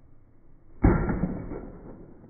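A bow shot about a second in: a sudden snap as the string is released, then the bow ringing and fading away over about a second.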